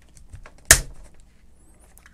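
Knipex 90-55-280 hand sheet metal nibbler punching a notch in a 1 mm steel plate: a few light clicks as the jaws close, then one loud, sharp snap about three quarters of a second in as the punch cuts through.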